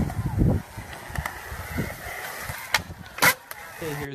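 Wheels rolling on the concrete of a skatepark, with a low rumble in the first half-second and a few sharp clacks of boards or scooters hitting the ground, the loudest just after three seconds.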